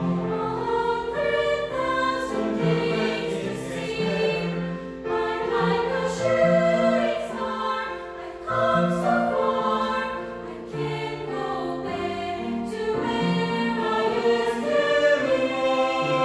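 Mixed choir of young men's and women's voices singing in parts, holding and changing chords throughout.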